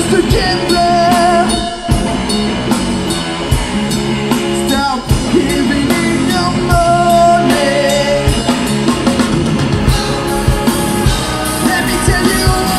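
Live rock music from a two-piece band: electric guitar and drum kit playing, with a man singing and holding some long notes.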